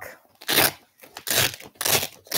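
Clear plastic storage bag crinkling as it is handled, in three short bursts.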